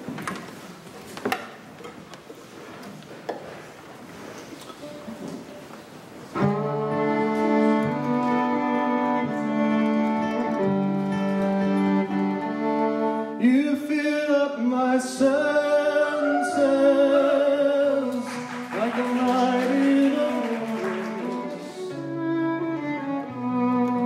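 Fiddle playing the instrumental intro of a slow waltz over acoustic guitar. The music starts about six seconds in, after a quiet stretch with a few light clicks and knocks.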